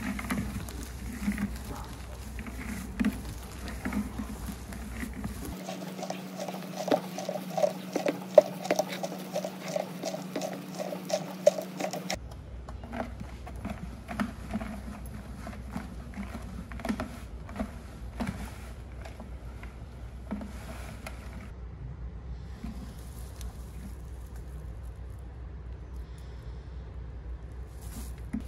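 Chopped noni leaves and brown sugar being mixed by hand in a large jar: soft rustling and crackling of the leaves with small irregular clicks. For several seconds in the middle the rustle turns into an even swishing rhythm, about three strokes a second, over a steady hum.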